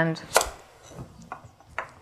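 A kitchen knife cutting through the stem end of a butternut squash and striking the wooden cutting board beneath. There is one sharp chop about a third of a second in, then a few lighter knocks.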